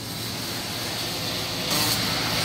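Steady background noise with a hiss that brightens briefly near the end.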